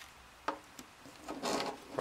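Faint handling noise from a plastic jump-starter unit and its cable plug being picked up: a small click about half a second in, then a brief soft rub a second later.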